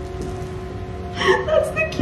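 Quiet background music of steady held notes. About a second in, a woman lets out a few short, high-pitched, wavering cries of emotion through the hand over her mouth.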